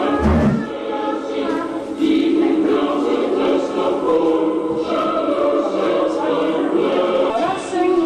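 Music with a choir singing, continuous throughout, with a brief low bump just after the start.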